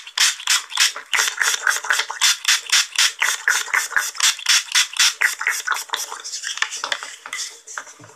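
Trigger spray bottle spritzed in quick succession, about five short hissing sprays a second, the sprays growing fainter over the last second or two before they stop.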